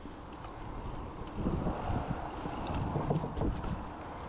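Mountain bike rolling along a dirt singletrack, picked up by a GoPro's built-in microphone: wind buffeting the microphone over a rumble of tyres and rattling bike. It grows louder from about a second in.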